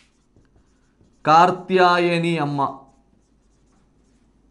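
Faint strokes of a marker pen writing on a whiteboard, with a man speaking for about a second and a half in the middle.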